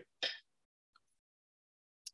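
Near silence broken by one short throat-clearing sound about a quarter second in.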